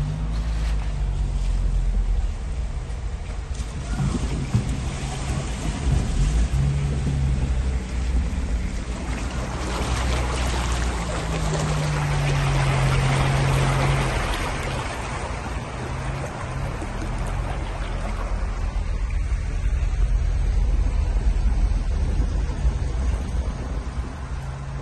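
Car driving through floodwater, heard from inside the cabin: a steady low engine hum under the hiss and slosh of water churned up by the tyres, with a louder rush of water about halfway through.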